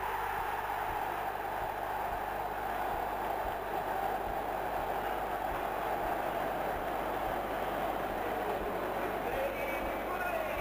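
Football stadium crowd cheering a goal: a steady mass of voices with no single words picked out.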